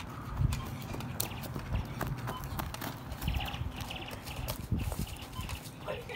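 Irregular thumps and scuffs of running footsteps on grass, with scattered clicks. A brief high pulsed sound comes about three seconds in.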